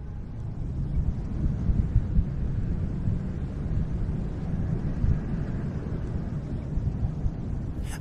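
Low wind rumble, swelling in over the first second and then steady with a constant gusty flutter.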